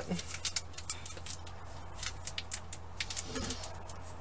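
Plastic wrapper of a trading-card pack crinkling in the hands as it is turned over, in scattered small clicks and crackles over a low steady hum.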